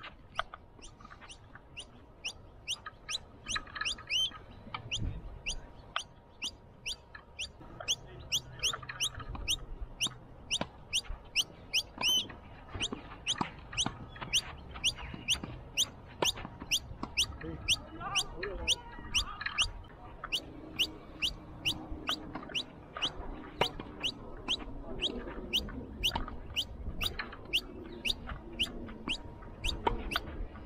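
A bird chirping over and over, short high chirps that fall in pitch, about two a second. Tennis balls being struck are heard as a few sharp pocks among the chirps.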